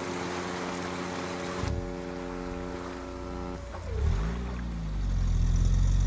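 Film soundtrack: a held musical chord over a rushing hiss that thins after a couple of seconds. The chord ends after nearly four seconds, and a low rumble then builds and grows louder.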